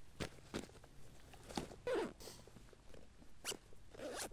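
Faint handling noise of a 1000D Cordura nylon backpack being moved and turned over: scattered fabric rustles, light knocks and a couple of short squeaky scrapes.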